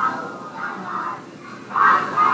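Soundtrack of a projected video playing over room speakers: music with children's voices, swelling loudest near the end.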